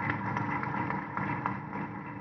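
Audience applauding: a dense patter of many hands clapping that eases off slightly toward the end.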